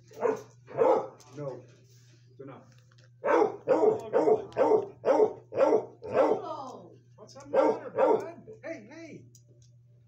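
Dog barking in a quick run of short, loud barks, each dropping in pitch, coming in three groups with brief pauses between them.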